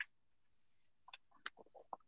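Near silence, broken by a few very short, faint vocal sounds from the presenter in the second half, such as murmured syllables.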